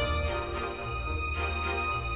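Instrumental background music with held notes and jingle bells shaken a few times.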